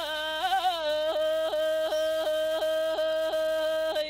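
A woman singing unaccompanied in the traditional Sakha style, holding one long note broken by short, regular throat flicks about three times a second, the kylyhakh ornament of Yakut toyuk singing.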